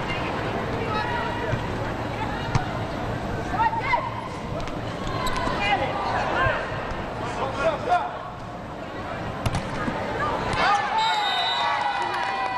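Indoor volleyball match: steady crowd noise with shouts and cheering, and a few sharp hits of the volleyball during the rally.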